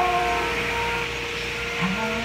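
A woman singing: a held note fades out about half a second in, and she starts a low, wavering sung line near the end, over a steady background hum.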